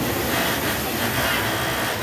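ISAMU industrial sewing machine running steadily as it top-stitches elastic onto fabric, a continuous mechanical whir.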